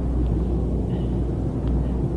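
Room tone: a steady low hum and rumble with faint background noise, and a few faint ticks.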